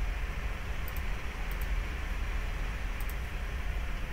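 Steady low background hum with a few faint, sharp mouse clicks as a linetype is picked and the dialog is closed.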